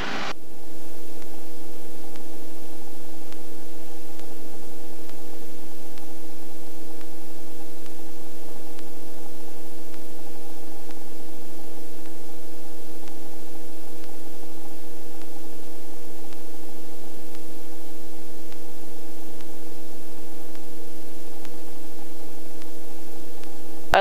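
Helicopter cabin noise in steady low flight: a constant engine and rotor drone of several even hum tones over airflow hiss, with no change in pitch or level after it fades up in the first second.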